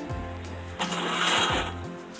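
Background music with a steady bass line; about a second in, a brief rough scraping rattle as a weathered wooden plank door is pulled open.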